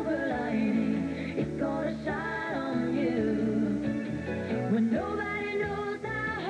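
Sitcom opening theme song: a melody, likely sung, over a steady instrumental backing.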